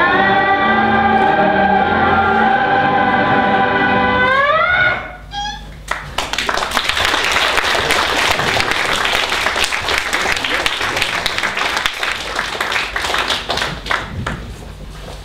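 A song ends on a long held sung note that slides upward and cuts off about five seconds in. An audience then applauds for the rest.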